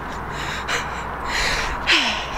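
A person's breathy gasps and laughing breaths close to the microphone: a couple of short puffs about half a second in, then longer breaths in the second half, over a steady low street rumble.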